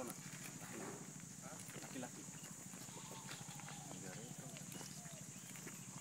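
Faint voices of several people talking in the background, with a few light scuffs and clicks, like steps on dry ground.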